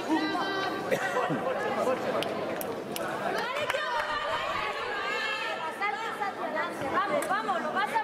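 Indistinct chatter of several voices overlapping, echoing in a large sports hall, with a few sharp clicks scattered through.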